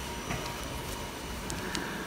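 Steady background noise of a fuel station forecourt, with a faint high hum and a few light ticks.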